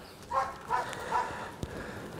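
An animal calling three times in quick succession, short evenly spaced calls quieter than the nearby speech, followed by a single click.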